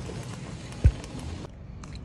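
A single loud, dull, low thump about a second in, over steady background noise that drops away abruptly near the end.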